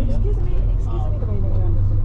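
A steady, low engine and road rumble heard from inside a moving bus, with people talking over it.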